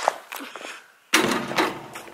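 A basketball hitting the backboard and hoop of a driveway basketball hoop with a loud thunk about a second in, ringing briefly after.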